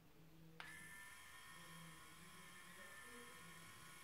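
Near silence: faint room tone. From about half a second in, a faint steady high whine of several tones sits over a low hum.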